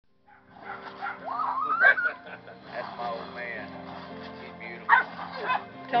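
Dogs barking while playing tug of war over a bottle, with two loud barks about two and five seconds in. Music plays in the background.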